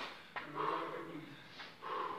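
A sharp click about a third of a second in, then a faint low human voice for about a second.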